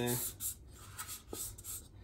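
Cloth wiping out the inside of a thin plastic cup, giving a few short scratchy rubbing strokes.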